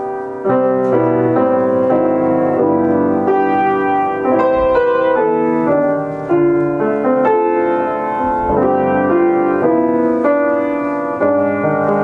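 Grand piano being played: a continuous melody over chords, with notes following one another in quick succession and a few fresh chords struck firmly along the way.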